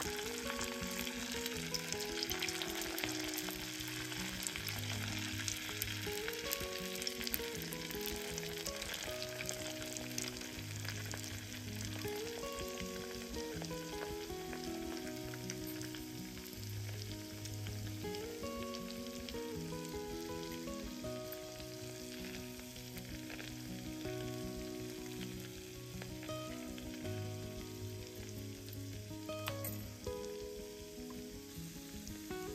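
Hot oil sizzling with fine crackles as food fries in a pan. A slow melody of held notes plays throughout.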